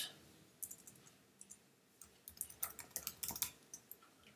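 Faint typing on a computer keyboard: scattered key clicks, then a quick flurry of keystrokes in the second half.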